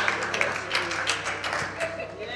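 Scattered hand-clapping from a small congregation, with music playing underneath.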